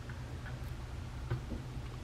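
Faint, scattered clicks of a plastic action figure being handled as its head is tilted on its joint, over a steady low hum.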